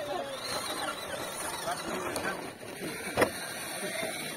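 Electric motor and gear drive of a 1/10-scale RC rock crawler whining as it crawls up a rock, with a sharp knock about three seconds in.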